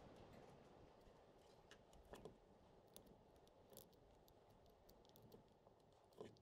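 Near silence with a few faint clicks and taps from a small plastic hour meter and its wire being handled and set on a plastic air filter cover; the clearest click comes about two seconds in.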